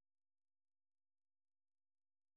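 Near silence: a blank, essentially soundless track.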